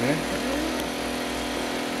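A machine engine running steadily, a constant-pitched hum that holds unchanged throughout.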